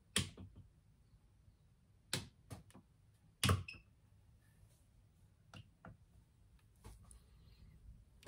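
A few scattered clicks and knocks of hands handling equipment, the loudest about three and a half seconds in, as the power to a model railway's DCC system is switched off and back on.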